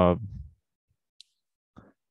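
A man's drawn-out hesitation "uh" trailing off, then near silence broken by a single short, faint click about a second in and a faint breath near the end.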